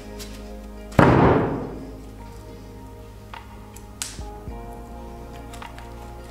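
A plaster-bandage outer mould shell being pulled off a silicone mould: one loud crack about a second in with a short rough tail, then a sharp tap near four seconds, over background music.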